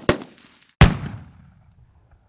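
Logo-sting sound effect: a short sharp crack at the start, then one loud, deep, shot-like hit a little under a second in that rings out and dies away over about a second.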